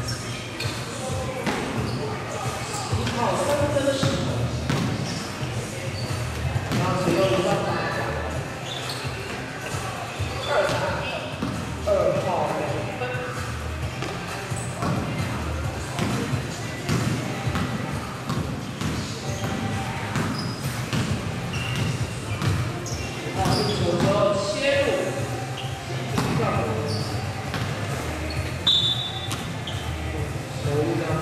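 A basketball being dribbled on a wooden or sports-floor gym court during play, with scattered voices calling out, all echoing in a large hall.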